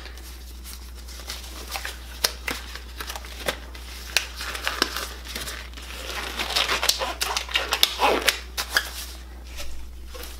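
Black nitrile gloves being pulled on by hand: crinkling and small snaps of the thin rubber, scattered at first and coming thicker in the second half.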